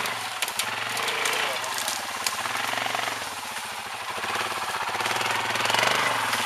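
Quad bike engine running steadily with rapid, even firing pulses, getting a little louder near the end.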